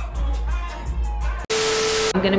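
Club music with heavy bass plays loudly, then cuts off suddenly about one and a half seconds in, giving way to a burst of TV static hiss with a steady electronic tone running through it: a glitch transition effect.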